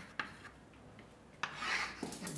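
Chalk on a blackboard: a sharp tap as it meets the board, then a scratchy stroke of about half a second near the end as a line is drawn.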